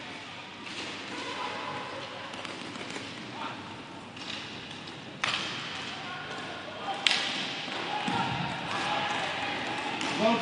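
Inline hockey play on a sport-court rink: a steady hiss of wheels and play with scattered stick and puck knocks, and two sharp, hard knocks about five and seven seconds in. Faint voices can be heard in the background.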